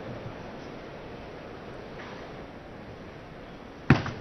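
Steady background noise of the arena crowd, then, just before the end, a single sharp click of a celluloid table tennis ball being struck as the next rally starts.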